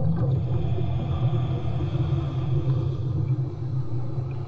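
Steady low rumble of water as heard underwater, with a faint hiss over the first three seconds, around a person wearing a dive mask and snorkel.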